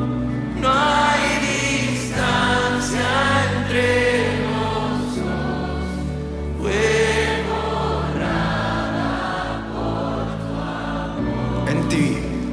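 A live worship band playing a slow Spanish-language worship song. A male lead singer with an acoustic guitar sings over held low chords that change every few seconds.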